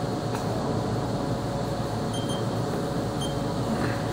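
Steady machine-shop hum with a low drone and faint steady tones, broken by one light click near the start.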